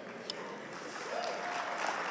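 Congregation clapping: a fairly quiet spread of applause that grows slowly louder.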